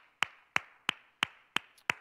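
One person clapping hands in a steady rhythm, about three claps a second, six claps in all.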